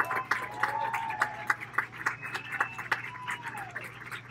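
An audience clapping, with a few voices calling out over the applause.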